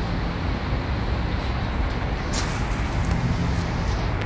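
Steady road traffic noise, mostly a low rumble.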